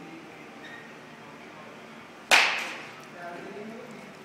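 Baseball bat hitting a pitched ball once: a single sharp crack a little past halfway, trailing off in a short ringing tail.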